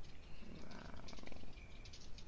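Light computer keyboard and mouse clicks, with a brief low rattly buzz starting about half a second in and lasting about a second.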